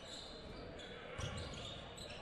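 Faint live court sound of a basketball game in a gymnasium: a basketball thumping on the hardwood floor, the clearest thump about a second in, over the hall's low murmur.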